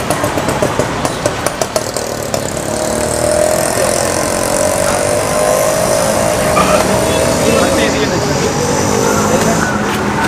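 A motor vehicle's engine running, its pitch climbing slowly over several seconds.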